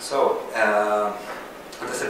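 A person speaking in a room, a short stretch of talk the recogniser did not write down.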